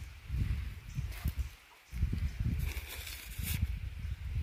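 Footsteps rustling through dry leaf litter, over an uneven low rumble, with a brief lull a little before halfway.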